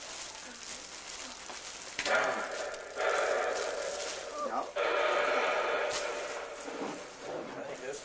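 Clear plastic gift bag crinkling as a present is pulled out of it. About two seconds in come long, drawn-out voices that carry on for several seconds.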